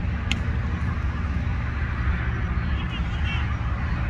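A single sharp crack of a cricket bat striking the ball, heard just after the start over a steady low rumble.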